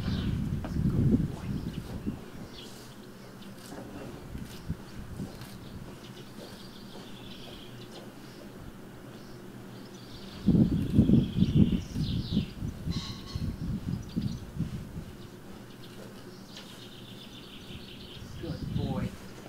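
Small birds chirping on and off. In the first two seconds, and again from about ten seconds in, an uneven low rumbling noise is louder than the birds.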